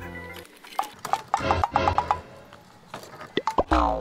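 Edited-in comic sound effects: a series of short squeaky chirps and sliding tones, with several glides falling in pitch near the end. A steady musical note stops about half a second in.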